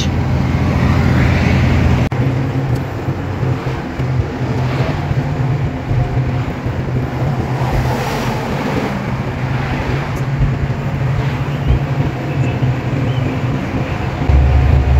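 Inside a heavy truck's cab on the move: a steady low diesel engine drone under road noise. About two seconds in, the lowest part of the drone drops back.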